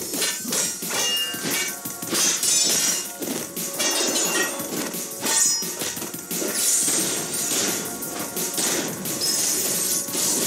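Animated sword-fight sound effects: a rapid, irregular series of blade clashes and hits, some leaving a brief high ring, over a fast soundtrack.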